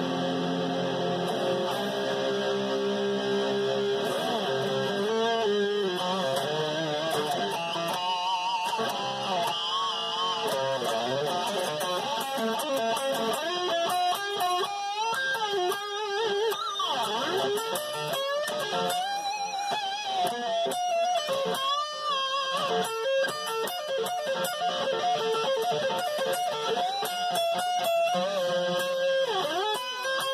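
Jackson electric guitar played with a pick: a few held notes at first, then lead lines with string bends and vibrato.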